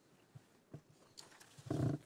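Quiet room tone with a few soft knocks, then near the end a short, louder, low vocal sound from a person.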